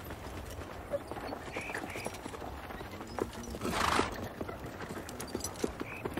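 Hooves of a pair of horses clip-clopping as they pull a carriage along a snowy track, an irregular run of soft knocks over a steady low rumble. A brief louder rush of noise comes about four seconds in.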